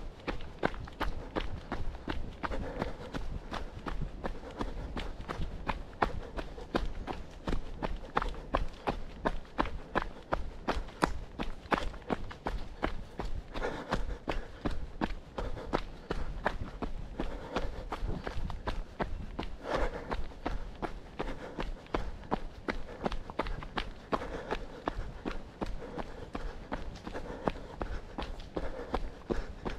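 A runner's footsteps on a packed dirt and gravel trail, landing in a steady, even rhythm.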